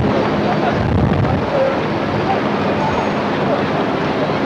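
Steady, noisy street ambience of passing traffic with indistinct voices mixed in.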